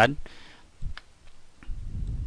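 A few faint, sharp computer mouse clicks as a picture is clicked, dragged and resized on screen, with a low rumble near the end.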